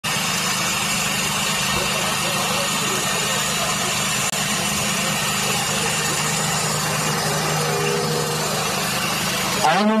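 Steady murmur of a large outdoor crowd over a constant low hum. Near the end a man's voice starts through a microphone and loudspeaker.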